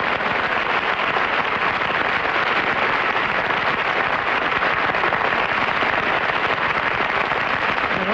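Studio audience applauding, a steady even clapping.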